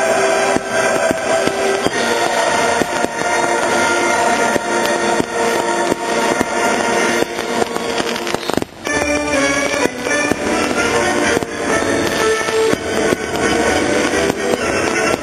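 Aerial fireworks going off in quick succession, sharp bursts and crackling, over loud music playing throughout.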